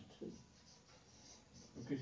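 Marker pen writing on a whiteboard: faint scratching strokes.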